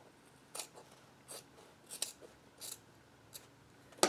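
Fabric scissors snipping through the top layer of a sewn quilt block, in about five separate cuts spaced a little under a second apart.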